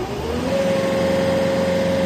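Riding mower's engine speeding up as the throttle is raised. It climbs over the first half second, then holds a steady higher speed with a steady whine.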